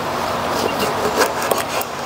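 Kitchen knife cutting through a lemon onto a wooden cutting board, with a few small clicks and scrapes, over a steady rush of wind on a clip-on microphone.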